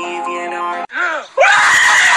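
Music with steady notes cuts off suddenly a little under a second in. After a short vocal sound, a man's loud, drawn-out scream of agony starts about halfway through and carries on to the end.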